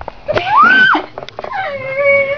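A high, drawn-out whining voice that glides up, holds and falls away, then a second long wail near the end.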